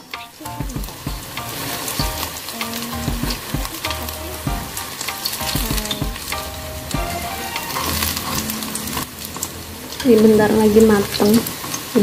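Battered banana slices frying in shallow oil in a wok: a steady sizzle, with light clicks of chopsticks turning the pieces. The flour batter is starting to dry and crisp as the fritters near done.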